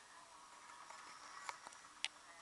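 Glossy magazine pages being flipped and handled, faint, with a couple of small paper clicks about one and a half seconds in.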